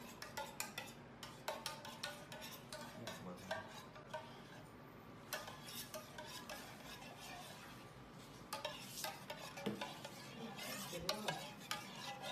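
A spoon stirring milk and vinegar in a steel pot, with light, irregular clinks and scrapes against the pot, stirred until the milk curdles. The stirring sounds ease off a little past the middle.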